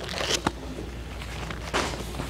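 Bible pages being turned: paper rustling in two swells, with a short click between them.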